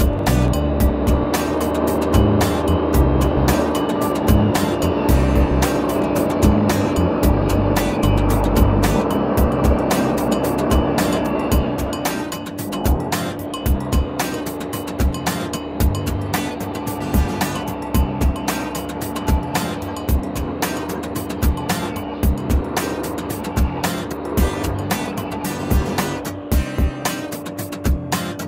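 Background music with a steady beat over a table saw running with a steady motor hum. For roughly the first twelve seconds the blade is cutting through a board, adding a louder rushing noise; then it spins freely.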